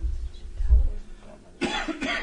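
A person coughing, a sudden sharp burst near the end, after a low rumbling bump a little under a second in.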